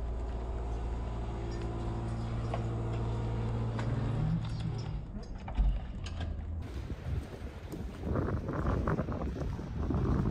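A motor running with a steady hum that rises slightly in pitch about four seconds in, then gives way to a rougher, noisier sound that grows louder near the end.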